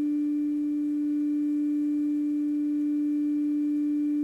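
Trio 9R-59D valve communication receiver sounding a steady low test tone through its loudspeaker, unchanging in pitch and level, with faint overtones. It is the audio modulation of the 455 kHz test signal injected through a loop aerial, demodulated by the set while its IF transformers are peaked.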